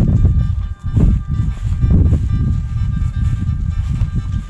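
Wind buffeting the microphone in loud, uneven low gusts, with soft background music playing steadily underneath.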